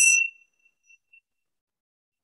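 Tingsha cymbals struck together once: a bright, high metallic chime that rings only briefly, with a few faint traces of the ring over the next second.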